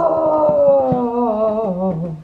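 A person's long, drawn-out wailing howl, sliding slowly down in pitch and wavering toward the end.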